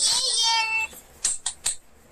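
A child's high-pitched drawn-out squeal, a little under a second long and falling slightly in pitch, followed by a few short sharp clicks.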